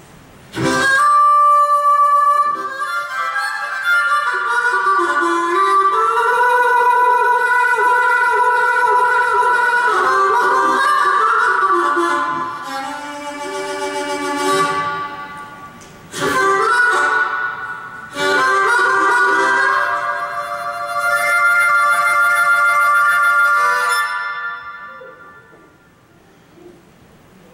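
A small diatonic harmonica, the kind without a slide button, played solo in phrases that often sound several notes at once, some notes sliding in pitch. It starts about half a second in, breaks off briefly twice in the second half, and stops a second before the end.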